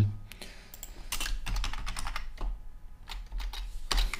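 Typing on a computer keyboard: irregular runs of key clicks that start about a second in, with a short pause in between.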